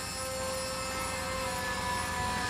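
Soft background music of long held notes, a steady chord with a higher note joining about halfway through, over a low steady rumble.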